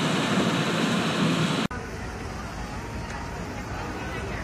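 Road and wind noise inside a moving car's cabin. About a second and a half in, it cuts off suddenly and gives way to quieter street noise with a low rumble.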